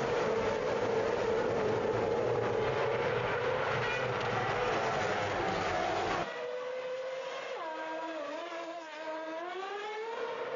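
Formula 1 cars' 2.4-litre V8 engines at high revs on the opening lap, heard as a dense, steady drone from the pack. About six seconds in it drops to a quieter single engine note that steps down in pitch as the car brakes and downshifts for a corner, then climbs again as it accelerates away.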